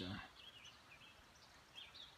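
Near silence with a few faint, short bird chirps, once about half a second in and again near the end.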